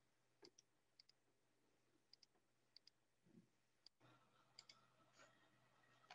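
Faint computer mouse clicks over near-silent room tone: short clicks, many in quick pairs, scattered through.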